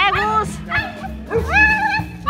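Dogs barking at each other, with a short bark right at the start and a longer drawn-out call in the second half, over background music.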